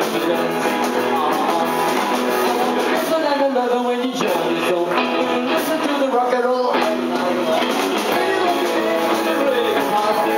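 Live rock and roll band playing electric guitars and drums, loud and steady, with bending guitar notes in the middle.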